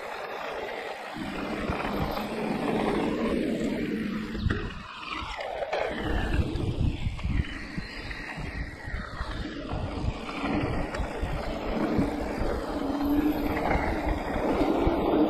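Wind rushing over the camera microphone while an e-mountain bike rolls fast down a dirt and gravel trail, tyres crunching and the bike rattling over bumps, with the rattling denser from about four seconds in.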